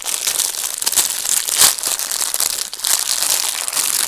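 Plastic wrapper of a gummy popsicle crinkling steadily as it is pulled and twisted, the packaging too tough to tear open easily.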